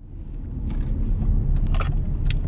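Steady low road rumble heard from inside a car's cabin, building up over the first second, with a few faint light clicks.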